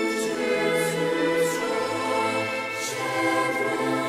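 A choir singing a slow hymn, several voices holding long notes and moving together from one note to the next.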